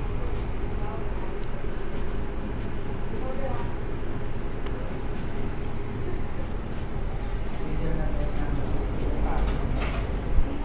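Steady café room noise: a continuous low rumble with faint background voices.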